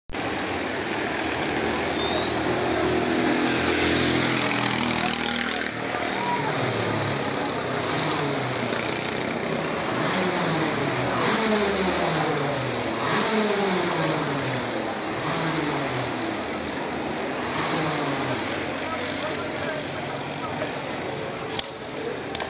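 Several racing kart engines running together on the circuit. Their pitches rise and fall over and over as the karts brake, accelerate through the corners and pass by. There is one sharp click near the end.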